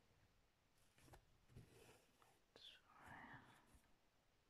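Near silence: a few faint soft ticks of a needle and thread being worked through cross-stitch fabric, and a brief whispered murmur about two and a half seconds in.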